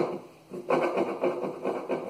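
A hand rubbing and shifting a cotton T-shirt on the bottom of a bathtub: a scratchy fabric rustle that starts about half a second in.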